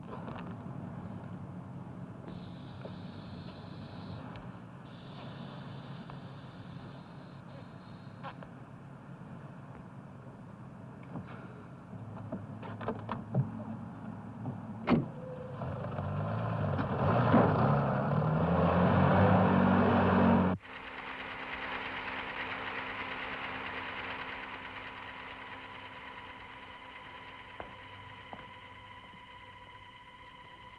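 A car engine running steadily, then louder with its pitch rising as the car accelerates, cut off abruptly about twenty seconds in, with a few knocks shortly before. After the cut, a steady hum with a few held tones.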